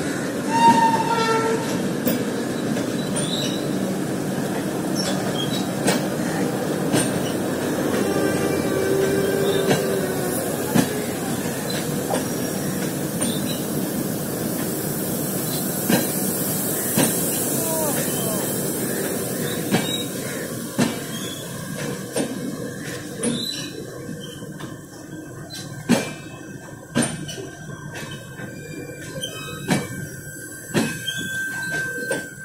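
Passenger coaches of an arriving express train rolling slowly past, wheels rumbling and knocking over rail joints, with a few brief high wheel squeals in the first few seconds and again around nine seconds in. The rumble dies away in the second half, leaving separate knocks as the train slows to its stop.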